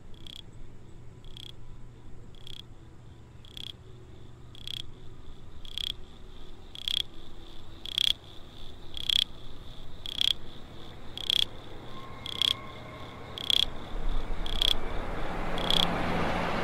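Minimal techno: a sharp, high electronic tick repeating evenly about twice a second, like a cricket chirp, over a faint low bass hum. Near the end a noisy swell and a deeper bass come in and the track grows louder.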